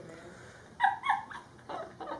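A young woman's stifled, high-pitched giggles behind a hand and face mask: a few short squeaky bursts starting about a second in.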